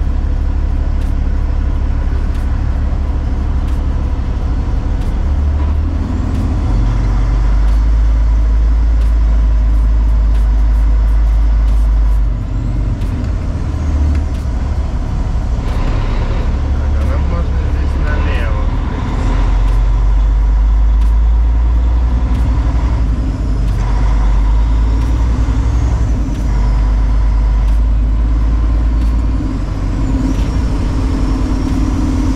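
Kenworth W900L heavy-haul truck's diesel engine running under way, heard from inside the cab as a steady low drone. Its loudness rises and falls several times, with brief dips about twelve and nineteen seconds in.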